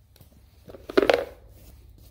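Brief clatter of plastic cable connectors being handled and fitted about a second in, as a GM Tech 2 scan tool cable is plugged into a CANdi adapter module; otherwise quiet room tone.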